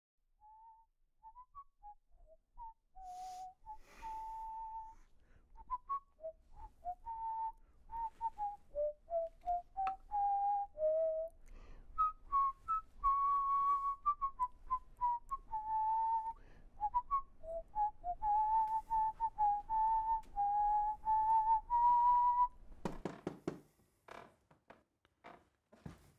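A person whistling a slow, wandering tune, one clear note at a time with some notes held longer. A short low-pitched sound comes near the end.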